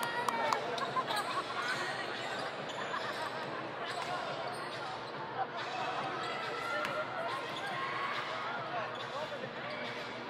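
A basketball bouncing and knocking on the court at scattered moments during play. Underneath runs the steady chatter of a large crowd of spectators.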